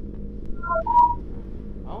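A quick run of electronic beeps: three short tones stepping between higher and lower pitches, then a longer, louder beep.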